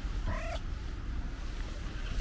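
Domestic cat giving one short meow about a quarter of a second in, over a steady low rumble.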